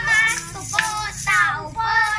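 Children singing a Christmas carol in high voices, with sharp, regular strikes from improvised hand percussion keeping time.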